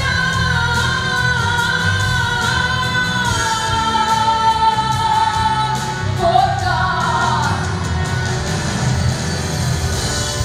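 A woman sings a slow song into a microphone over instrumental accompaniment. She holds long notes through the first half, sings a short phrase about six to seven seconds in, then the accompaniment carries on alone near the end.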